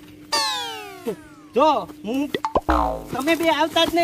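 Cartoon-style comedy sound effects added in editing: a long sound that falls in pitch, then a springy boing about two and a half seconds in, over a steady background tone.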